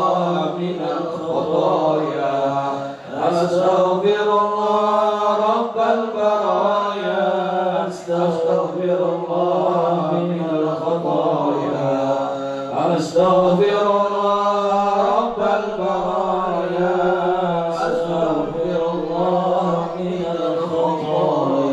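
A group of men chanting Islamic devotional verses (istighfar) into microphones, in long drawn-out melismatic phrases that break for breath about every five seconds.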